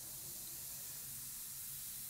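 Iwata Custom Micron C airbrush spraying paint in light passes: a faint, steady hiss over a low steady hum.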